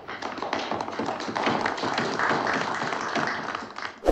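A room full of men applauding: a few scattered claps swell into dense, steady applause that thins out near the end.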